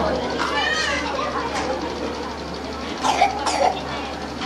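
Men's voices reciting a marsiya, Urdu elegiac verse chanted in a melodic style over a microphone, with other voices in the background and a couple of louder sharp sounds about three seconds in.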